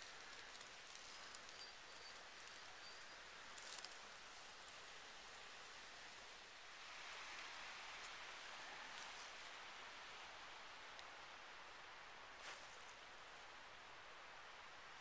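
Near silence: faint steady outdoor hiss in a woodland, with a couple of soft ticks.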